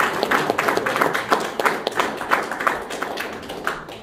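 Audience applauding, a dense patter of many hands clapping that thins and dies away near the end.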